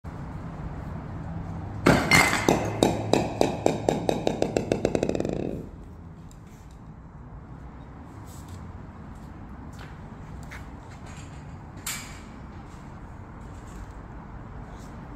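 A bowling ball dropped from a ladder strikes an insole on a cinder block, then bounces on the concrete floor, each bounce ringing and coming quicker and fainter until it settles about three and a half seconds later. A few faint clicks and one sharper knock follow near the end.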